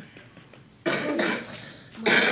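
A child coughs once, about a second in: a single sudden cough that fades within about half a second.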